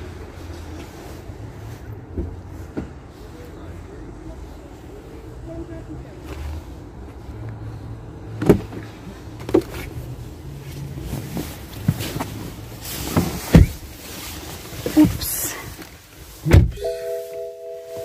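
Outdoor car-park hum with scattered clicks and knocks, then a BMW car door shut with a loud thump about sixteen and a half seconds in. The outside noise drops away at once inside the closed cabin, and a steady tone sounds near the end.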